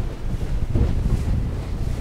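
Wind buffeting the microphone aboard an aluminium boat running under way at cruising speed: a rough, low rumbling noise.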